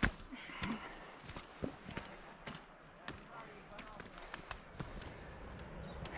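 Footsteps on a rocky dirt trail with the taps of trekking-pole tips striking the ground, irregular sharp ticks a couple of times a second.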